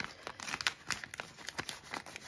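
A plastic zip-top pouch being handled as a banknote goes into it, crinkling with quick, irregular small clicks and rustles.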